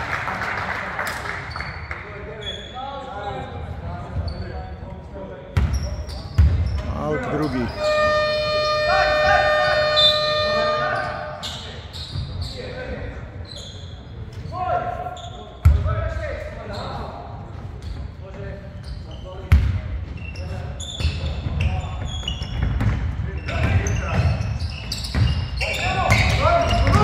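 Basketball thudding on a wooden gym floor as it is bounced, with players' voices echoing around a large sports hall. A steady scoreboard horn sounds for about three seconds, about a third of the way in.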